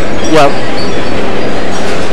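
A short spoken "yeah" just after the start, over a loud, steady, distorted din of busy shopping-mall ambience that overloads the recording.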